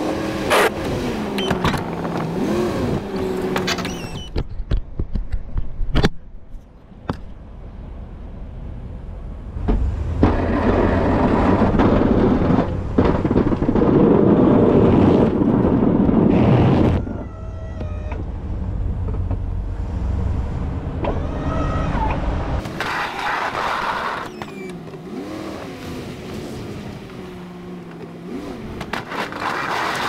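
Chevy 3500HD pickup engine running and revving, rising and falling in pitch, as its Boss DXT V-plow blade pushes snow. There is a sharp knock about six seconds in and a louder, rougher stretch of about seven seconds in the middle.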